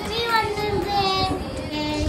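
A young child singing, the voice gliding between notes and holding a long steady note for most of the second half.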